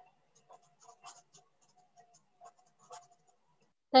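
Faint, scattered clicks and small scratchy noises at irregular intervals, picked up by a computer microphone on an online call, with no speech.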